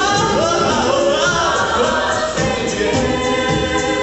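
An a cappella vocal group singing through the hall's PA: a lead voice glides up and down over held backing harmonies, with short high ticks keeping a steady beat.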